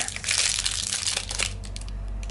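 Foil-lined protein bar wrapper crinkling as it is peeled open: a dense run of crackles for about a second and a half that then thins out.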